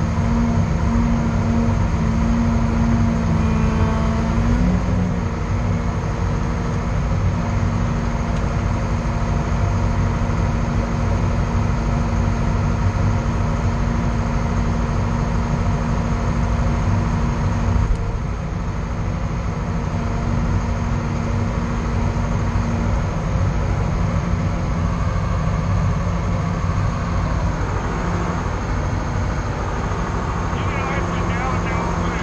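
Loader's diesel engine running steadily, heard from inside the cab, with a steady hum and whine. The pitch shifts briefly about five seconds in, and the level dips slightly a little past halfway.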